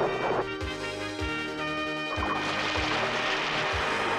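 Dramatic cartoon background music with a steady low beat, over a rushing, splashing water sound effect that swells about halfway through as a cauldron of water is poured out.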